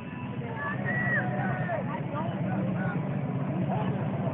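Motorcycle engine running at low speed, getting a little louder about half a second in, under a crowd's voices and shouts.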